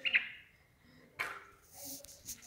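A chicken held in the hand gives one short squawk at the start while being restrained for eye treatment. A brief rustle follows, and a soft hushing hiss comes near the end.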